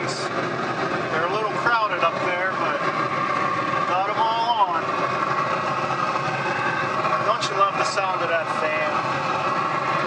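Traeger pellet grill running, its fan giving a steady hum.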